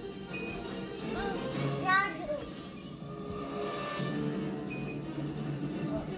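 Background music and voices, as from a television playing in the room. Two short, high electronic beeps sound, one about half a second in and one near the end.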